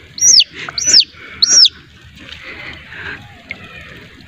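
Three loud, high chirps from a bird, about half a second apart, each rising and then falling in pitch.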